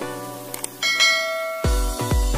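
Background music with a bright bell chime ringing out just under a second in, the notification-bell sound effect of a subscribe-button animation, preceded by a couple of short clicks. A deep, regular electronic dance beat comes in near the end.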